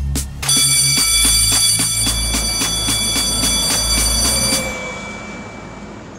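Electric school bell ringing continuously, its hammer rattling rapidly against the metal gong, from about half a second in for some four seconds, then stopping and fading. Music with a beat plays under its start.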